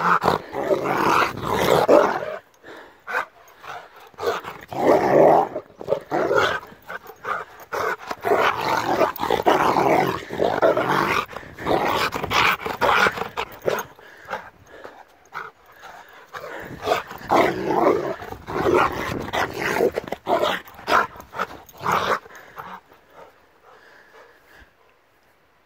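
A Rottweiler growling at a person's hand in rough play, in repeated loud bouts with short breaks. The growling stops about two seconds before the end.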